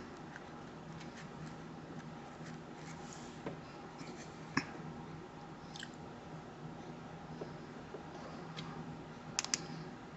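Quiet room with faint handling noises: a few scattered small clicks and taps over a low steady hum, with a sharper pair of clicks near the end.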